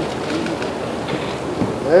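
Murmur of a crowded hall: low background voices and room noise, with a short voiced sound near the end.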